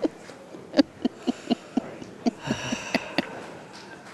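Pool balls clicking sharply against one another, about ten irregular clacks, with a brief hiss a little past halfway.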